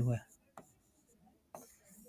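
A man's word trailing off, then near silence broken by two faint ticks about a second apart: a pen tapping as it writes on a board.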